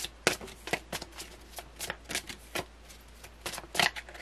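A deck of tarot cards being shuffled overhand by hand: quick slaps and swishes of cards, about four a second, with a short pause before a last few near the end.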